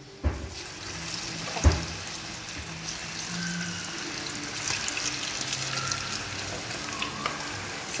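Batter-coated chicken pieces deep-frying in hot oil in an iron kadai, a steady sizzle and bubbling. Two knocks come in the first two seconds, the second louder.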